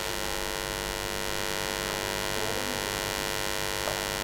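Steady electrical hum with a layer of hiss, unchanging throughout: the mains-type hum of the recording setup between spoken lines.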